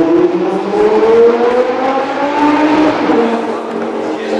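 A car engine accelerating, its note rising steadily for about three seconds, then dropping away near the end.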